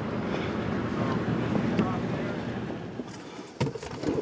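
Steady wind and outdoor noise while walking with the camera. About three seconds in, it gives way to a few sharp clicks and a knock inside the parked car, with keys jangling.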